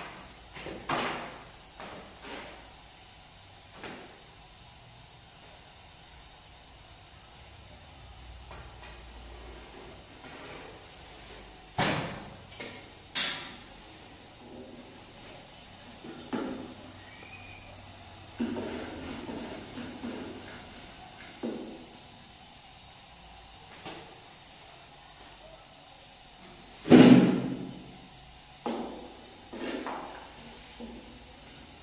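Long thin wooden rolling pin knocking and tapping against a round wooden board while flatbread dough is rolled out by hand. Irregular knocks every few seconds, with a rustling stretch in the middle and one loud, deeper thump near the end.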